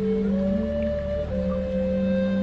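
Slow ambient meditation music: long held tones that glide from one pitch to the next over a steady low drone.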